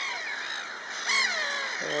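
Birds calling: a few long calls that fall in pitch, one just at the start and another from about a second in.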